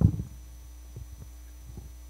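Microphone handling noise: a loud thump right at the start, then a series of soft knocks as the microphone is picked up and moved. A steady electrical hum from the sound system runs underneath.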